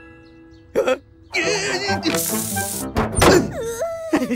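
Cartoon soundtrack of music and comic sound effects. A warbling, squeaky voice-like sound comes about a second and a half in, then a short burst of hiss and a loud thunk about three seconds in, followed by a gliding pitched note.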